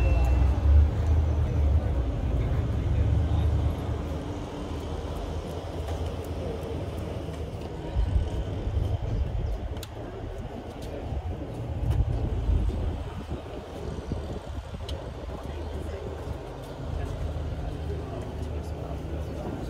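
Outdoor ambience: an uneven low rumble of wind on the microphone, heaviest in the first few seconds, over faint distant voices.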